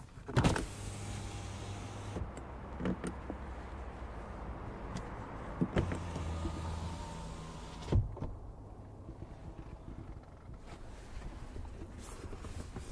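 Rear-door electric window of an Opel Grandland GSe running down and back up: a switch click, the window motor humming steadily as the glass lowers for several seconds, another click, then a shorter hum as the glass rises, ending in a sharp knock about 8 seconds in as it seats at the top.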